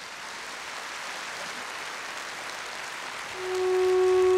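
Audience applauding in a large hall after the singer is announced. About three seconds in, the song's instrumental intro comes in louder, with a long held, steady melody note.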